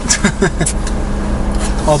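Men's voices and laughter inside a car cabin, over the steady low hum of the car's engine.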